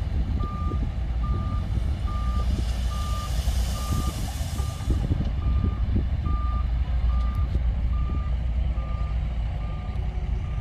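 Heavy diesel machinery running, with a reversing alarm beeping steadily about one and a half times a second over the deep engine rumble. A hiss rises for a couple of seconds midway.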